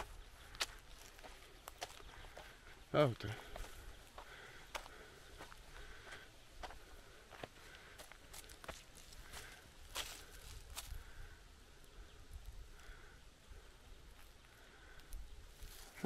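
Footsteps on a dry dirt track through cut woodland, with scattered small snaps and clicks of twigs and debris underfoot. About three seconds in, a brief voice sound from the walker.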